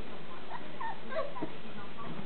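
Berger Picard puppies whimpering and squeaking in play, several short high squeaks that bend up and down in pitch.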